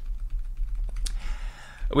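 A few light clicks of computer keys, the sharpest about a second in, over a low steady hum.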